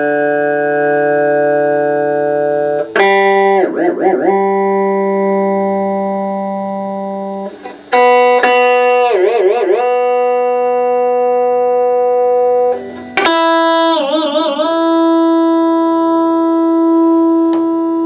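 Electric guitar, a Gibson Les Paul Axcess with a Floyd Rose tremolo, struck three times and left ringing. After each strike the tremolo arm is pumped in quick dives that wobble the pitch down and back up, testing whether the balanced Floyd Rose returns to pitch.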